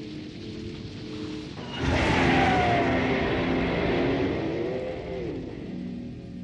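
Sound effect of military aircraft flying past: a loud rushing engine noise sets in suddenly about two seconds in, with whining tones that fall in pitch, then fades near the end. Held music notes play underneath.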